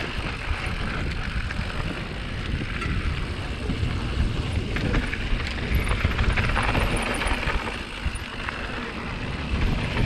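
Mountain bike rolling fast down a rough gravel trail: wind buffeting the helmet camera's microphone, tyres crunching over loose stones and the bike rattling with many small knocks.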